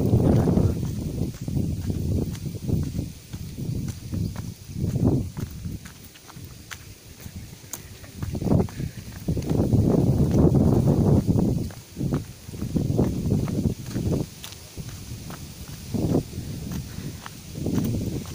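Footsteps on a dry dirt hiking trail, walking downhill, with irregular low rumbling gusts on the microphone, the longest about ten seconds in.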